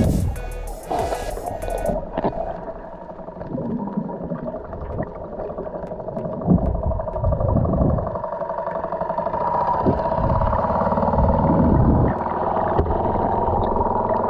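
Background music with sustained, steady tones.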